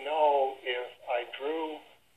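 Only speech: a man talking over a telephone line, his voice thin and narrow as phone audio sounds.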